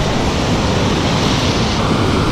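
Ocean surf breaking and washing up the beach in the shallows, a steady loud rush of water.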